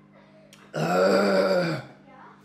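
A man lets out one loud, drawn-out belch, about a second long, starting under a second in.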